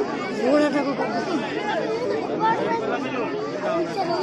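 Several people talking at once: overlapping crowd chatter, with no single voice standing out.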